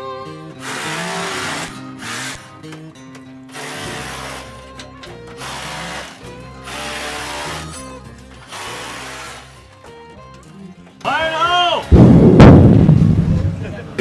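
Background music with a steady beat, a brief voice about eleven seconds in, then a sudden loud underground rock blast with a deep rumble that dies away over about two seconds.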